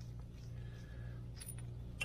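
Low, steady background hum with a faint light click about one and a half seconds in.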